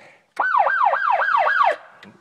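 An electronic siren wailing in quick falling sweeps, about four a second, for just over a second before cutting off.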